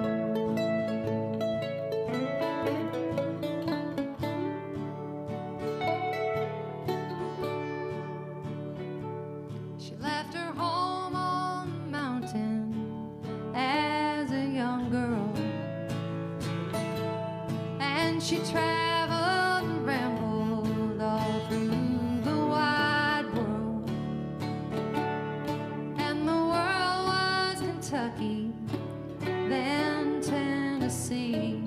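Country band playing live, with acoustic guitar, electric hollow-body guitar, mandolin and upright bass. For about ten seconds it is instrumental, then a woman's singing voice comes in over it.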